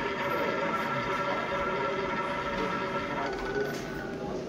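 Electronic roulette terminal's wheel-spin sound effect from the machine's speaker: a steady rolling whir with held tones, easing off about three seconds in.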